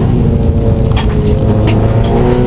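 Subaru STI rally car heard from inside the cabin: its turbocharged flat-four engine running over a heavy rumble of gravel road noise while the car slows, with a couple of sharp clicks.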